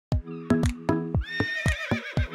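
Music with a steady drum beat, and a horse whinnying over it from a little past a second in, its high call wavering and fading near the end.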